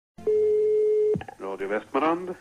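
A telephone dial tone, one steady tone, cut off by a click about a second in, followed by a brief voice sound near the end.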